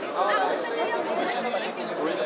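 Speech only: people talking, with overlapping chatter.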